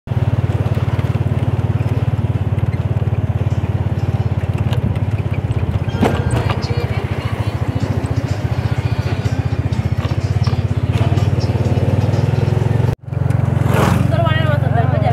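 Motorcycle engine running steadily under way, with a fast, even low pulse and road and wind noise over it. The sound drops out for a moment near the end, then resumes.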